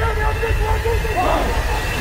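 Shouting voices with long held notes in the first second, over a steady low rumble.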